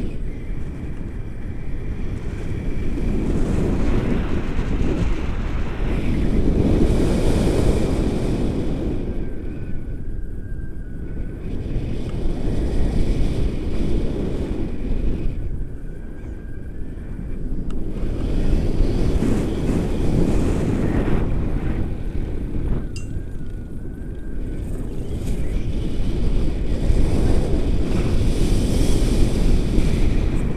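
Wind buffeting the microphone of a pole-held camera in a paraglider's airflow: a loud rushing noise, strongest in the lows, that swells and eases every few seconds.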